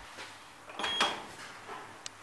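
A Thyssenkrupp STEPMODUL lift hall call button is pressed about a second in, giving a short high beep and a click.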